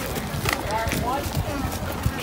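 Faint talk of people nearby, the words not clear, over uneven outdoor background noise.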